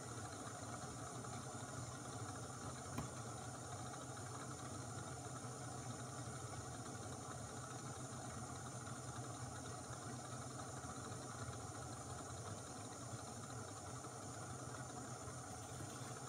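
Small gas canister backpacking stove (Etekcity) burning steadily under an Esbit stainless steel coffee maker as its water heats toward brewing: a faint, even burner hiss, with one small click about three seconds in.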